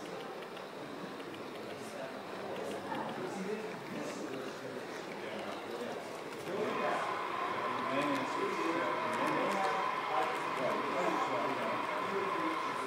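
Indistinct voices of people talking in the background, with a steady high tone coming in about halfway through and holding.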